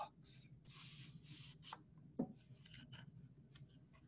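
Faint rustling and rubbing as the pages of a lift-the-flap picture book are handled and turned, with soft scattered brushing sounds.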